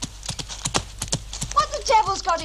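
Horses' hooves clip-clopping along a woodland track, a quick, uneven run of several hoofbeats a second. Near the end a pitched, wavering call rises over the hoofbeats.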